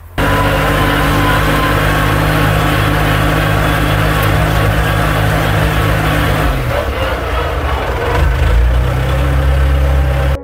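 Everun ER408 loader's 25 hp three-cylinder engine running steadily; about six and a half seconds in its note drops and settles lower.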